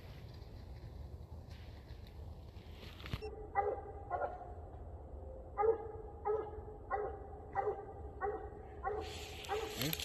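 A coonhound barking over and over, the barks coming in quick pairs about half a second apart. Before that, a steady outdoor rustling noise cuts off abruptly about three seconds in.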